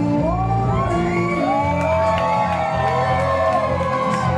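Live electronic music from a laptop-and-grid-controller set over a PA: a pulsing low bass line under gliding, pitch-bending melodic lines.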